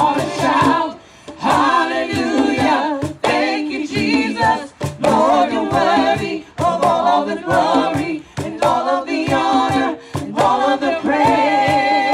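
Live worship band: several women singing a song together into microphones, with hand drums (congas and cajón) beating a steady rhythm.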